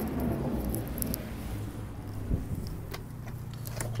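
Low steady background hum with a few faint scattered clicks and a soft thump a little over two seconds in.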